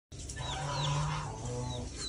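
A chick peeping: three short, high, falling peeps, over a lower, steadier sound that is loudest about halfway through.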